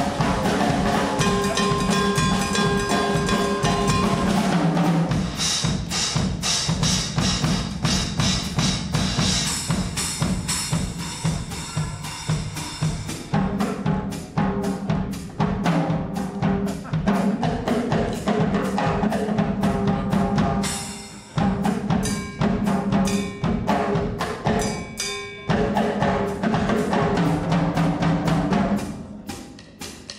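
Drum-kit solo in a live traditional jazz performance: fast, busy strokes on drums and cymbals without pause, easing off to a quieter level near the end.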